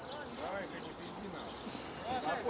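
Indistinct shouts and calls of football players on an open outdoor pitch, a couple of short voiced calls about half a second in and again near the end.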